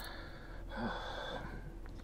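A person breathing audibly: a short breath at the start and a longer, breathy one about a second in.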